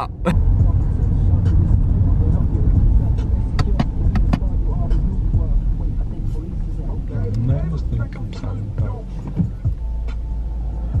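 Low, steady rumble inside a Ford car's cabin as it rolls along the road, with a few sharp clicks around the middle, easing off a little in the second half.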